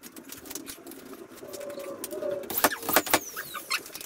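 Scattered light clicks and knocks of hands and tools working on wooden door framing, with a few sharper taps about two and a half to three seconds in.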